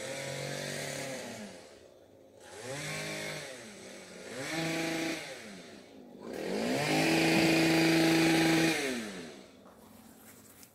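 A chainsaw's small two-stroke engine revved in four bursts. Each burst climbs to a steady high pitch and drops back to idle. The last is the longest and loudest, held for about two and a half seconds near the end.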